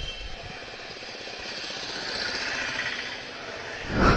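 Motorcycle engine running at low speed with a rapid, even pulsing as the bike slows and comes to a stop.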